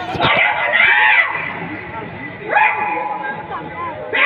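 A loud, high voice calling out over a stage sound system, in two rising-and-falling calls, about a second in and again near the middle, after a couple of sharp knocks at the start.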